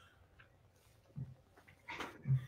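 Near silence in a pause in a conversation, with a faint, very short low sound a little over a second in.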